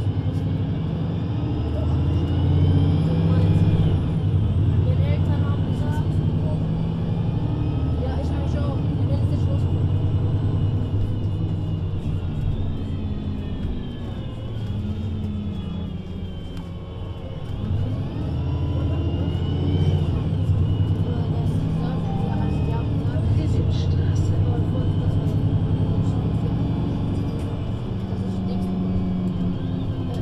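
VDL Citea LLE 120 city bus under way, its diesel engine and Voith automatic gearbox rising in pitch as it accelerates over the first few seconds. It eases off and slows about twelve seconds in, then picks up speed and climbs in pitch again a few seconds later.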